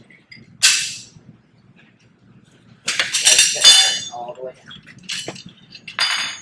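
Metal tool pieces clinking and clattering as they are handled: a sharp clink about half a second in, a longer ringing clatter around three to four seconds, and another short clink near the end.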